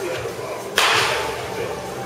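A baseball bat hitting a pitched ball once, a sharp crack about three quarters of a second in that rings out briefly.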